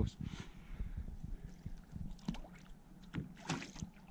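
Knocks and shuffling of a man moving in a small fishing boat and leaning over the side, with water sloshing, and a short splash near the end as a burbot is let back into the water.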